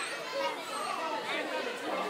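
Several voices chattering at once, children's high voices among them, with no single clear speaker.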